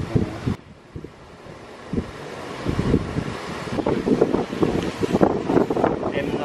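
Wind buffeting the camera microphone: uneven low rumbles that grow stronger from about two seconds in.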